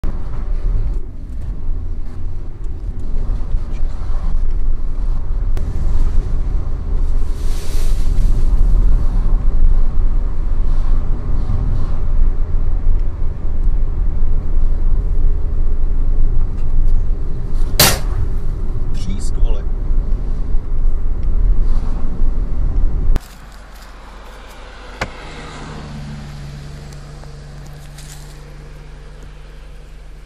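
Road and engine noise inside a moving car, broken by one sharp bang about eighteen seconds in as the car's door mirror strikes a roadside traffic sign. The noise then cuts off suddenly, leaving a quieter steady hum.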